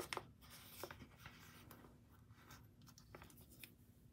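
Faint rustling and a few light clicks of photocards being handled and slid in and out of clear plastic binder sleeves.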